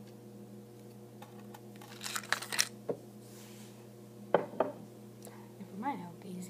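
A strike-on-the-box safety match scraped along the side of its matchbox: a quick run of scratchy rasps about two seconds in, then a short soft hiss as the head flares. Two sharp knocks follow a second or so later.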